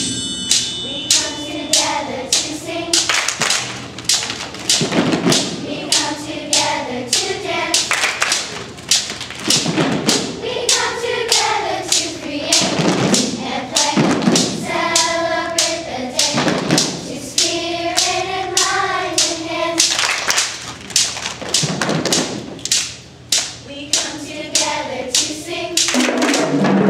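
A children's group singing in unison over a steady beat of hand claps and taps or stomps, in sung phrases with short gaps between them.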